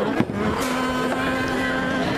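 Arcade ambience: electronic game-machine tunes stepping through notes over a continuous rumble, with one sharp knock about a fifth of a second in.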